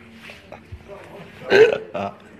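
A person's short, loud vocal sound about one and a half seconds in, with a brief second sound right at the end.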